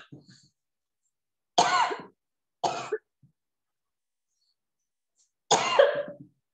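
A woman coughing: three short coughs, the first two about a second apart and the last near the end.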